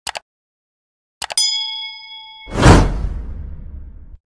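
Subscribe-button animation sound effects: a mouse click, then a couple more clicks and a bell ding that rings for about a second, then a loud whoosh about two and a half seconds in that fades away.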